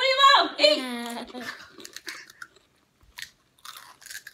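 People biting into and chewing Takis rolled tortilla chips: a scattering of small, crisp crunches. A voice is heard in the first second or so.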